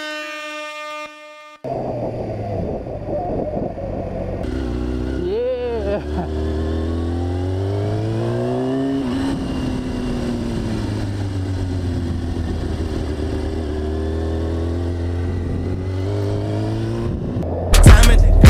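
A held tone fades out over the first second and a half. Then the stock inline-four engine of a 2014 Kawasaki Ninja ZX-6R 636 runs under acceleration: its pitch rises, drops at a gear change about nine seconds in, and rises again.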